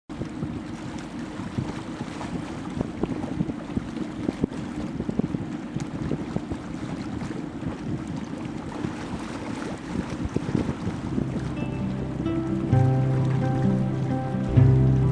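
Wind buffeting the microphone over a steady low rumble of water and running machinery aboard a river barge under way. Music fades in near the end and takes over.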